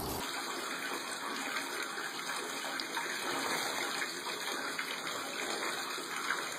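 Water running from a tap into a filled bathtub: a steady, even rush of water.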